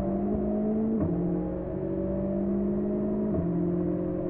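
Škoda rally car's engine heard from inside the cabin, running at fairly steady revs, with a small drop in pitch about a second in and again near the end.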